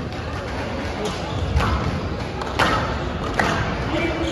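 Squash ball being hit in a rally: three sharp knocks about a second apart, over background chatter.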